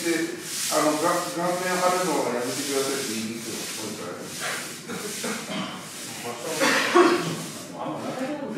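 Straw broom sweeping the sand-covered clay of a sumo ring in repeated brushing strokes. A man's drawn-out voice calls out twice in the first two seconds.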